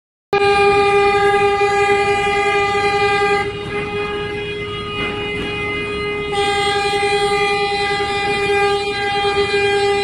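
A ship's horn sounding one long, continuous blast, a warning during a collision between container ships. It weakens for about three seconds in the middle, then comes back at full strength, over a low rumbling noise.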